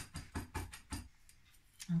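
Kitchen knife chopping ginger on a wooden cutting board: a quick run of taps that stops about a second in.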